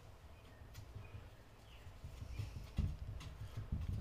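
Faint, irregular soft taps and scrapes of a metal palette knife dabbing paint onto a canvas board, a handful of taps spread across the seconds.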